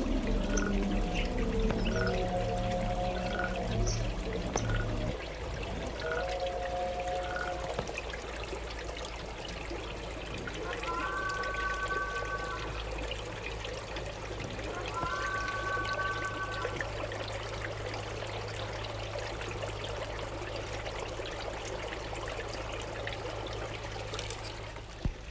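Trickling, pouring water from a forest field recording, with soft electronic music tones over it. A low drone and a run of short blips stop about five seconds in, and two brief held two-note chords sound later over the water.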